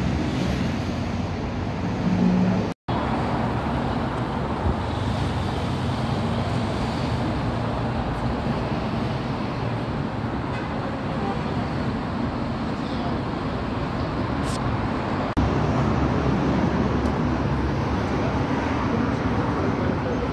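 Steady, loud background rumble and hiss of ambient noise, like distant traffic or building ventilation. It drops out completely for a moment about three seconds in, and steps up slightly in level around fifteen seconds in.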